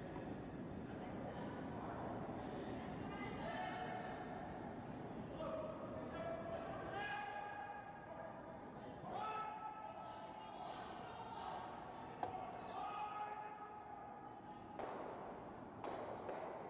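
Faint, distant voices calling across a large, echoing curling rink, with a small knock about twelve seconds in.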